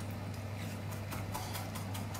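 Chef's knife rhythmically chopping parsley on a plastic cutting board, a steady run of light knocks about four to five a second as the blade rocks through the herbs.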